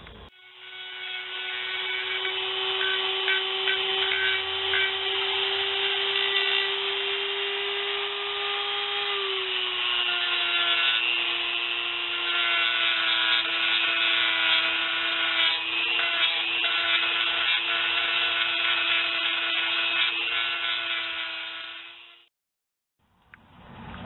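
Dremel rotary tool running at a steady high whine while shaping the edges of a PVC-pipe knife sheath; its pitch sags slightly about nine seconds in as it bears down, and it cuts off a couple of seconds before the end.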